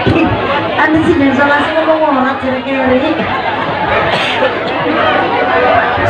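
A voice speaking in long, drawn-out tones over the chatter of a crowd.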